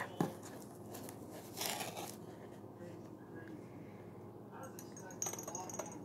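Faint handling of a cardboard baking soda box while baking soda is scooped out: a click just after the start, a brief rustle about a second and a half in, and a few light clicks near the end.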